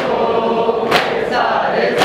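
Men chanting a nauha, a Shia lament for Imam Hussain, in unison, with a sharp slap about once a second from maatam, mourners beating their chests in time with the chant.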